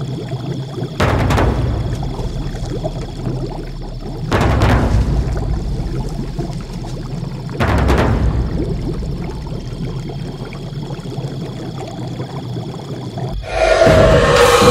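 Horror film sound design: a steady low rumbling bed with a thin high hum over it, broken by three sudden hits about three and a half seconds apart, each trailing off, and a louder swell near the end.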